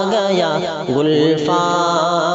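A male voice singing a nazam in a drawn-out, wavering line with no clear words. The phrase dips about a second in and a new held note starts soon after.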